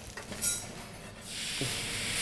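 Rösti frying in a pan: a short metallic clink about half a second in, then a steady sizzling hiss that swells in from about halfway through.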